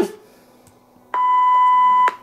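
A steady, single-pitched censor bleep about a second long, starting about a second in, masking a swear word in the spoken line.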